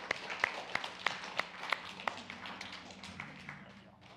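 Congregation applauding, with one person's clapping standing out at about three claps a second; the applause dies away toward the end.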